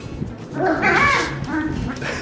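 Four-week-old golden retriever puppy giving a high, wavering vocal call of about a second, starting about half a second in, over background music.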